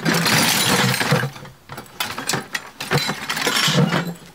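A bucket of scrap brass and copper pipe fittings tipped out onto a rug. The metal pieces pour out in a dense clatter for about a second, followed by scattered single clanks as pieces settle and are shifted.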